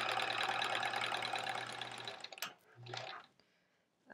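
Electric sewing machine running steadily as it stitches two quilt pieces together, then slowing and stopping about two seconds in. A click follows, then a brief short hum of the motor.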